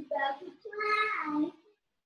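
A woman's voice murmuring half-aloud, its pitch rising and falling, for about a second and a half, then stopping.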